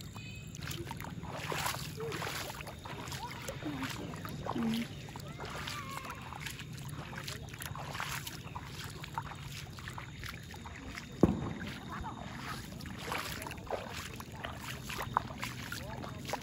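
Bare feet wading and splashing through shallow water lying over grass, in irregular sloshing steps, with a sharp knock about eleven seconds in.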